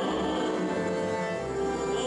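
Russian folk-instrument orchestra of domras and balalaikas playing an instrumental passage of an old Gypsy romance, with a falling run of notes over sustained chords.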